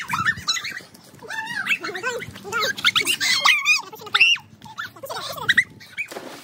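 Young people's high-pitched squeals and laughter: a run of short cries that rise and fall in pitch, loudest about three to four seconds in.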